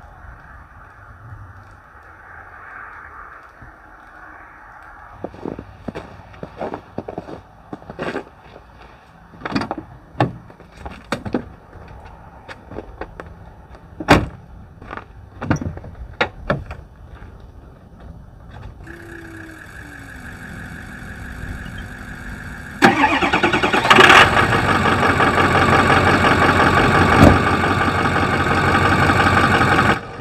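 Ford Power Stroke diesel pickup engine starting about three-quarters of the way in, then running loudly and steadily. Before it there are scattered sharp clicks and knocks, and a steady higher hum comes in a few seconds before the start.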